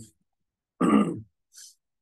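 A man clearing his throat once, about a second in: a short, rough burst.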